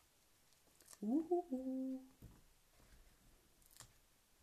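A woman hums a short wordless "hm-hmm" about a second in, rising in pitch and then dropping to a held lower note, for about a second. A faint click comes near the end.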